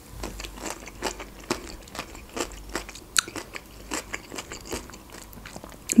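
Close-miked chewing of crunchy fresh cucumber: an irregular run of short crunches, two or three a second.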